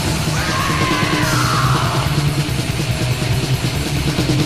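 Heavy metal music: distorted guitars and drums played densely and loudly. Over the first two seconds a high wailing line sweeps and falls in pitch above them.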